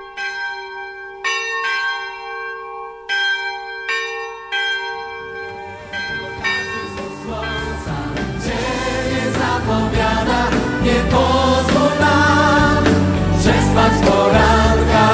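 A bell struck about six times, each tone ringing on, over the first five seconds. From about six seconds in, choral music fades in and grows steadily louder.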